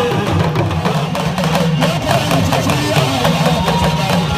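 Traditional Hausa drumming on an hourglass talking drum (kalangu), beaten in a quick, steady rhythm and amplified through a loudspeaker, its low tones bending in pitch.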